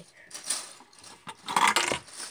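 Plastic Lego bricks clicking and clattering as the jail-cell build's pull mechanism is worked and a minifigure drops out: a small click about half a second in, then a louder clatter near the end.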